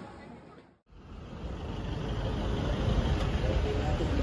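A brief dropout about a second in, then street traffic noise: a steady rumble of road vehicles passing, building up over a second or so and then holding.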